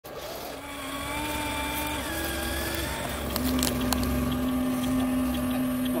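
Electric motors of a Huina 1593 RC excavator whining as the upper body slews round and the boom and arm move. A steady tone shifts pitch about two seconds in, then gives way to a louder, lower steady tone from about three seconds on, with a few sharp clicks around that change.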